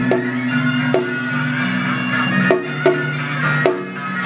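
Traditional Vietnamese ceremonial music: a sustained wind-instrument melody over a low drone, punctuated by five sharp, ringing percussion strikes at irregular intervals.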